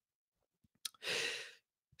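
A person's audible breath, about half a second long, between two spoken sentences, just after a small mouth click.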